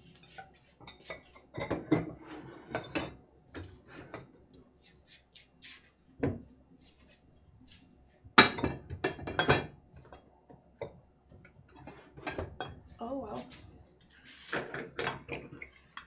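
Glazed Bolesławiec stoneware pieces clinking and knocking against one another and the wooden shelves as they are picked up and set down, in irregular clusters, the loudest a little past the middle.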